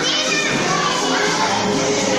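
Many young children chattering and calling out as they circle the chairs in a game of musical chairs, with music playing under their voices.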